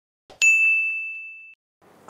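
A soft click, then a single bright ding that rings and fades over about a second: a notification-bell sound effect for a subscribe-button animation.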